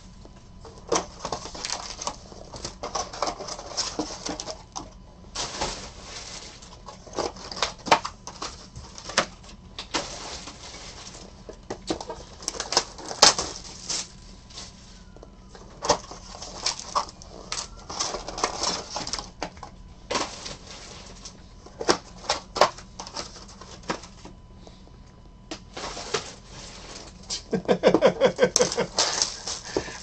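Cellophane shrink wrap crinkling and tearing while cardboard trading-card boxes are handled, in irregular bursts of rustling with sharp clicks and knocks. A man laughs near the end.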